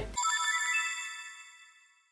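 Short bright electronic chime sound effect: a quick cluster of bell-like notes that rings out and fades away over about a second and a half, serving as a section-transition sting.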